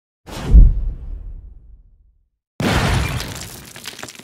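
Edited-in intro sound effects: a deep boom that fades away over about a second and a half, then after a brief silence a sudden shattering crash that rings down.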